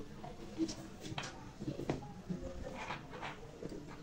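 Scissors snipping notches into the curved seam allowance of a sewn fabric sleeve: a few faint, separate snips.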